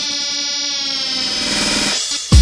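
Hard house music in a breakdown with the kick drum dropped out: a held, buzzy synthesizer tone over a fast pulsing stutter, its upper notes sliding slightly downward in the first second.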